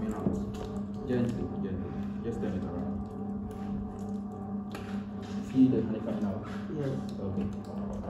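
People talking indistinctly in the background, with faint music underneath.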